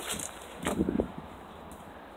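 Faint rustling and handling noise from a phone camera being swung about and brushed against a padded jacket, with a short cluster of soft knocks about a second in.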